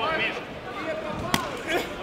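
Shouting voices of spectators and corner coaches ringside, with a single sharp smack about two-thirds through, a blow landing between the kickboxers.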